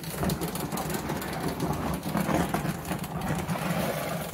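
A motor vehicle engine idling steadily, with small irregular knocks and scuffs over it.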